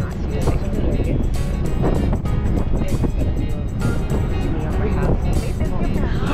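Background music with a steady beat and a voice in it, over a low, steady rumble of a ferry under way.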